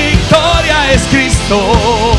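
Live worship band playing an up-tempo song: sung vocals with wavering held notes over a steady drum beat and band accompaniment.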